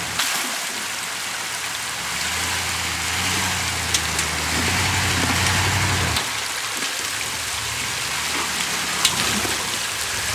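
Lifted Dodge Ram pickup's engine working under load as it crawls over rocks in a creek, its low drone swelling for a few seconds in the middle, over a steady rushing of water. Two brief sharp knocks stand out, one about four seconds in and one near the end.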